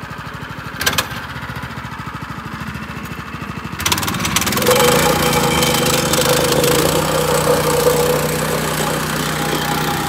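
Gas plate compactor's small engine idling with a sharp clack about a second in. At about four seconds it is throttled up and runs faster and louder, the plate vibrating and rattling over gravel.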